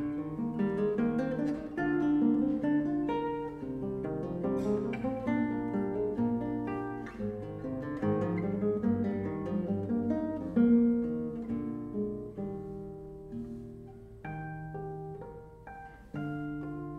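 Solo classical guitar, fingerpicked melody and chords played continuously. A strong accented chord comes about ten seconds in, and the playing then grows gradually softer.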